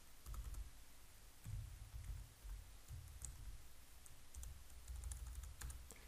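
Faint typing on a computer keyboard: a scattered run of key clicks, a few a second, each with a dull low knock.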